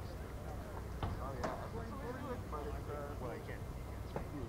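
Background chatter of several people talking at a distance, over a steady low rumble, with a couple of sharp clicks about a second in.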